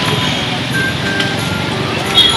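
Steady street traffic noise from cycle rickshaws and motor vehicles, with music mixed in and two brief high pings.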